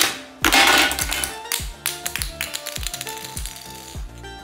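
A plastic Minion figure is sprung out of a pop-up barrel game with a sharp click, then lands and clatters on a hard tiled floor, loudest in its first second with a few smaller knocks after.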